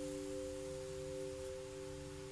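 The final chord of a detuned Cordoba guitar left ringing, three clear notes sustaining and slowly fading away.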